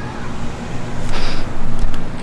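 Derbi GP1 scooter's two-stroke engine idling steadily. Its exhaust leaks at a cracked weld.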